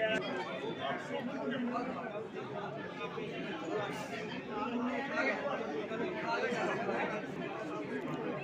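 Several people talking at once: overlapping, indistinct chatter of a small crowd, with no single voice standing out.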